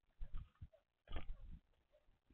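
Eurasian collared dove landing on the feeder right at the camera: two bursts of wing flapping and knocks, about a quarter second in and again about a second in, as the bird's body and wings brush the camera housing.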